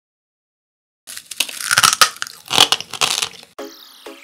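Loud, close-up crunching of brittle angel-hair (spun caramelised sugar) candy being bitten and chewed: several crunches that begin about a second in and stop shortly before the end. Music starts near the end.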